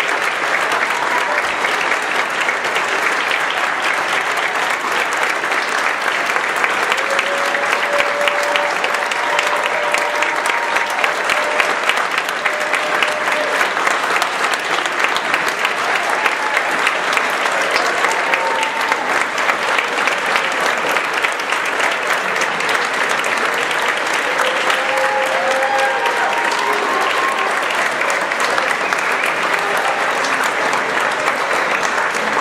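Audience applauding steadily for the whole stretch, with occasional cheers and whoops rising over the clapping, more of them in the second half.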